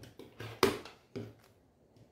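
Rotary cutter blade rolling along an acrylic ruler, cutting through fabric and quilt batting on a cutting mat: several short cutting strokes in the first second and a half, the loudest about half a second in.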